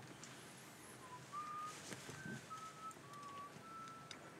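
A person whistling faintly: a slow, short tune of about six held notes, each a little higher or lower than the last, starting about a second in.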